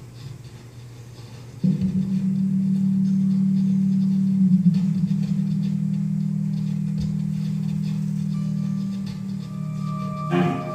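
Free-improvised music: a low, steady amplified drone that starts suddenly about two seconds in and holds, its pitch wavering briefly near the middle.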